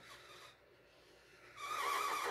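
Black marker tip rubbing across paper in a stroke that starts near the end, a scratchy rub with a faint squeak.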